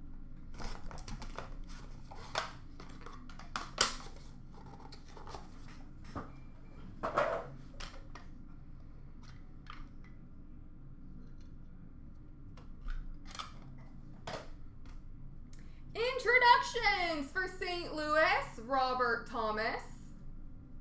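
Hockey card packs being opened and the cards handled: scattered sharp snaps and crinkles of the wrappers, with a longer rustle about seven seconds in. Near the end a person's voice is heard, louder than the handling.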